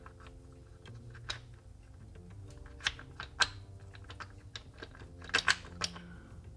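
Hardwood blocks of a Pelikan castle builder puzzle clicking and knocking against each other as they are lifted and set in place: scattered light clicks, with a quick cluster of them near the end.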